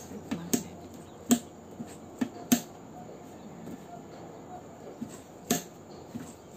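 Magnetic flap of a rigid cardboard gift box snapping shut and being pulled open, heard as a handful of sharp, irregular clicks, most of them in the first two and a half seconds and one more about five and a half seconds in.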